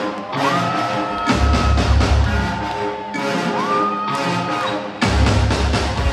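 Live band playing soca music: a held melody line that slides up and holds over a steady drum beat, with heavy bass coming in twice, about a second in and again near the end.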